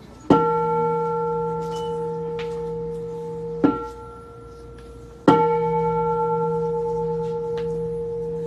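Buddhist bowl bell struck with a striker and left ringing, a low hum with several higher overtones. About three and a half seconds in a short second stroke damps the ring, and the bell is struck again and rings out about five seconds in.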